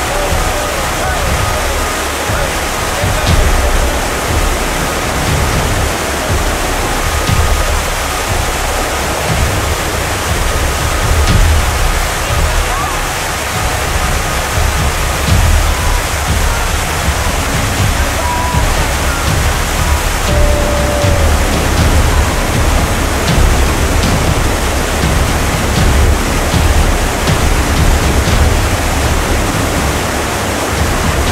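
Whitewater river rapids rushing steadily, a loud, even noise with a heavy, uneven low rumble underneath.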